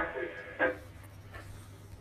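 A man's voice heard over a radio link, cut thin and carrying a steady low hum. His words trail off at the start, a short syllable comes about half a second in, and then only the faint hum remains.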